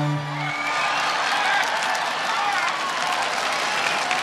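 Audience applause, as the live band's final chord rings out and dies away about half a second in.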